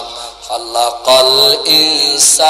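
A man's voice chanting melodically through a PA system, holding long sliding notes; it drops away briefly and comes back strongly about a second in. A steady high-pitched whine runs under it.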